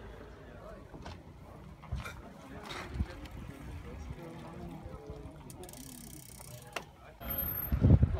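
Indistinct voices of people talking in the background, with a few sharp clicks and a loud low burst of noise near the end.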